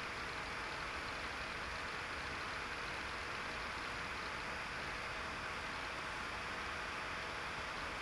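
A steady, even hiss that does not change, with a faint low hum beneath it.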